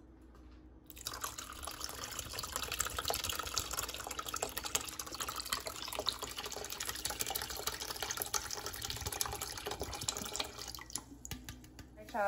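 Coconut water poured from a can into a saucepan of chicken broth: a steady splashing stream that starts about a second in and stops near the end.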